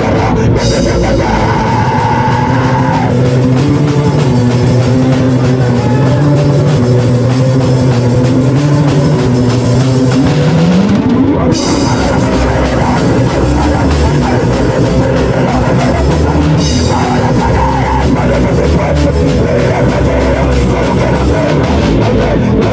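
Live punk hardcore band playing loud: distorted electric guitar, bass and drum kit together, with a note sliding upward about halfway through.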